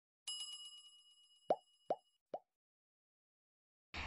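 Sound effects from a subscribe-button animation. First comes a bright notification-bell ding that rings out over about two seconds. Then three short plops follow, each quieter than the last.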